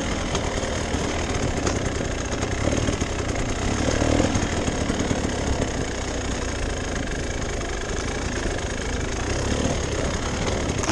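Enduro dirt bike engine running at low revs, rising a little about four seconds in, as the bike works slowly over a rocky trail.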